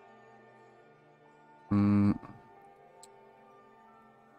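Soft ambient background music of sustained steady tones, with one short loud tone lasting under half a second about two seconds in.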